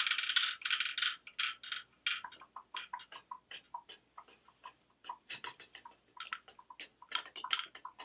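Wooden pecking-chickens toy clattering, the little wooden hens tapping the paddle in a fast run of clicks, followed by sparser, irregular clicks that pick up again near the end.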